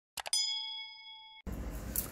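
Sound effect of two quick mouse clicks followed by a single bell ding that rings for about a second and is cut off abruptly. A steady hiss and low rumble then begin.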